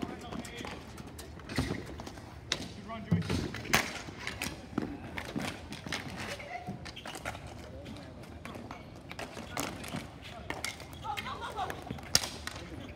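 Ball hockey play: scattered sharp clacks and knocks of sticks hitting the ball and each other, irregular and at no steady rhythm, with scattered voices and shouts from players and onlookers.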